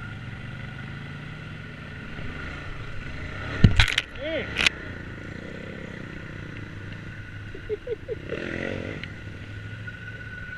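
ATV engine running at low trail speed, with a loud clunk and clatter about four seconds in and a second sharp knock a second later as the quad jolts over a fallen log.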